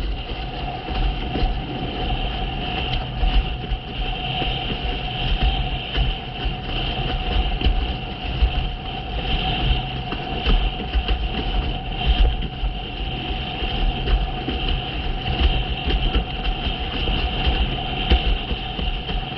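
Windsurf board planing fast over chop: wind buffeting the microphone and water rushing and slapping under the hull, with many small irregular knocks. A steady whistle runs through it.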